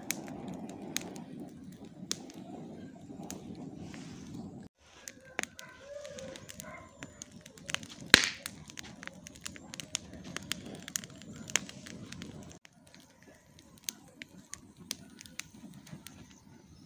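Split firewood burning in a steel mangal, crackling with frequent sharp pops and one loud snap about eight seconds in. The fire is burning the wood down to coals for grilling.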